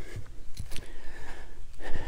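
Steady low rumble on the handheld camera's microphone as someone walks uphill, with a few soft footfalls in the first second and a breath near the end.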